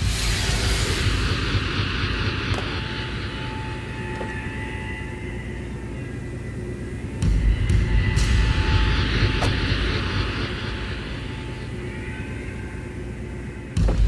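Dramatic film background score: a rushing, rumbling drone with a thin held high tone over it. A heavy low rumble comes in suddenly about seven seconds in and again just before the end, with a few sharp clicks along the way.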